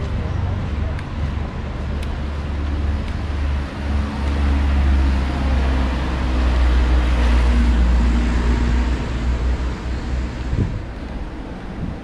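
Street traffic noise: a motor vehicle passing on the road, swelling to its loudest about seven or eight seconds in, over a steady low rumble.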